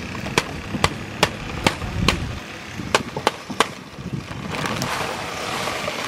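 Paper bag of fast-setting concrete mix being shaken and emptied into a fence post hole: a run of sharp paper crackles about twice a second, then a soft hiss of the dry mix running out near the end.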